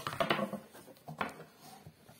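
Handling noise of test leads and wires being connected at a multimeter: a sharp click at the start, scattered rustle and knocks, and another click a little past a second in.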